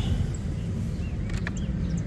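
A small metal barrel-bolt latch on a wooden kitchen drawer being slid shut, giving a couple of sharp clicks about one and a half seconds in, over a steady low rumble. A bird chirps faintly a few times.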